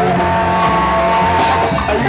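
Live Agbor band music from electric guitars and a drum kit, with long held notes over a steady low beat.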